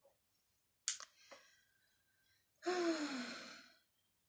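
A woman's breathy sigh near the end, its voiced tone falling in pitch, preceded about a second in by a brief sharp sound and a faint click.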